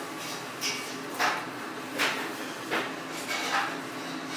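Jacket rustling and short knocks against a wooden chair, about six in four seconds, as a fleece jacket is taken off and hung on the chair back.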